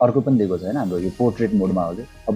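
A man's voice speaking, with faint background music under it.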